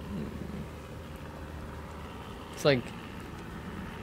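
A pause in conversation with a steady low background hum and faint hiss; one short spoken word about two and a half seconds in.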